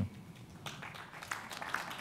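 Applause, a group clapping with scattered, irregular hand claps that start under a second in.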